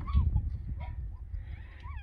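Wind buffeting the microphone in a low rumble, with several short chirps that rise and fall in pitch scattered through it.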